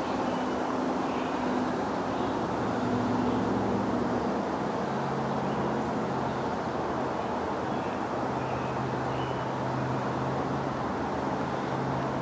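Steady rumble of distant motor traffic, with a low engine drone that drops in pitch about five seconds in and holds.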